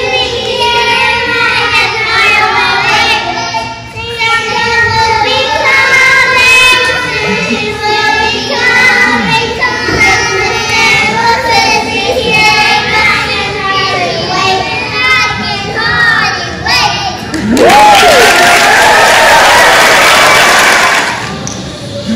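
A group of young children singing a song together. About three-quarters of the way through, the audience breaks into loud applause and cheering with a whoop, which dies away just before the end.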